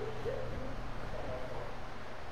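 Quiet room tone with a steady low hum under a faint even hiss.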